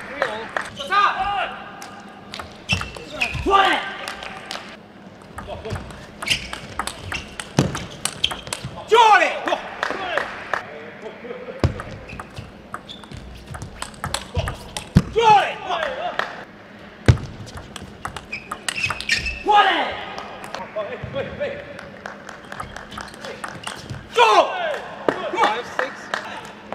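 Table tennis rallies: the celluloid-type ball clicking off the table and the bats in quick exchanges, punctuated every few seconds by a player's short shout after a point.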